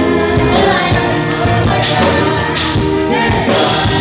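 Live band playing a pop song with a group of voices singing together, over a steady beat, with two bright crashes around the middle.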